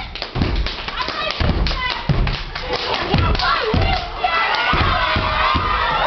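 Step team stepping on a stage floor: a run of heavy foot stomps in an uneven rhythm, with an audience shouting and cheering over them.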